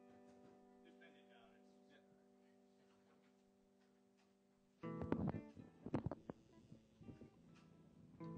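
A strummed guitar chord ringing out and slowly fading, then struck again a little under five seconds in with a few sharp strums that ring on. It is a sound check of the plugged-in guitar.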